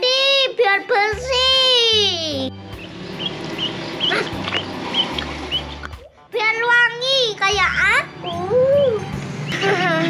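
A child talking, with background music underneath; the talk pauses for a few seconds in the middle.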